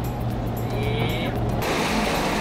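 Steady low motor hum under background music; about one and a half seconds in, the sound switches abruptly to an even rushing noise.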